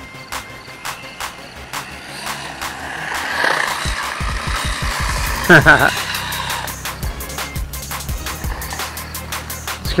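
A 1/16-scale brushless RC truck driving on a wet road: its electric motor whine rises and falls with the throttle over the hiss of tyres on water. A short vocal exclamation comes about halfway, with music underneath.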